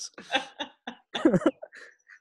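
People laughing in a string of short, broken bursts.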